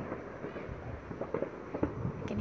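Distant fireworks in a neighbourhood: a few faint, scattered cracks and pops over a low, steady rumble.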